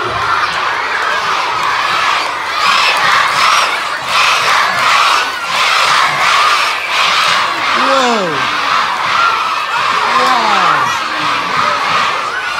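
A large crowd of schoolchildren cheering and shouting, surging in loudness about twice a second from a few seconds in, with a few long falling whoops near the end.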